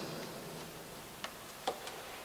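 A pause between a man's sentences in a reverberant church: the echo of his voice fades, then three faint, short clicks come in the second half.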